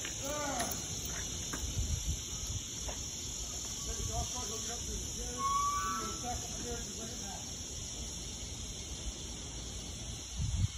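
Distant, indistinct voices of people in the street, over a steady high hiss and a low rumble on the phone microphone.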